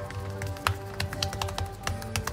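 Background music with a run of sharp, irregular taps in the second half.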